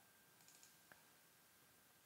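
Near silence: faint room tone with a faint steady high tone, and a single faint computer-mouse click about a second in.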